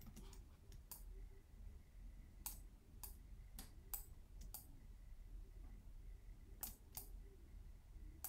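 Sparse, faint clicks at a computer, about eight of them at irregular intervals, over a low steady room hum.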